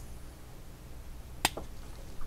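A single sharp snip of small scissors cutting through a cotton yarn end, about one and a half seconds in, over quiet room tone.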